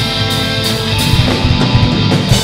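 Live rock band playing loud: amplified electric guitars ringing over a drum kit, with the drums hitting harder from about halfway through.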